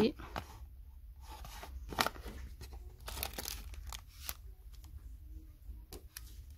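Plastic-wrapped craft packs crinkling and rustling as they are handled on a shelf, with scattered sharp clicks, the loudest about two seconds in.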